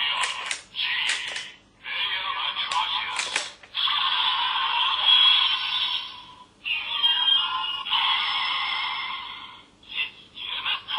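Electronic toy sounds from the DX Delta Rise Claw's small built-in speaker, thin and tinny: a short voice callout and several sharp clicks in the first few seconds, then long stretches of music and effects with brief gaps.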